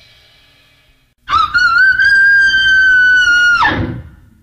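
Noise-rock recording between tracks: the tail of the previous piece dies away to a brief gap. Then a loud, piercing high shriek starts suddenly, wavers, holds steady for about two seconds and breaks off just before the end.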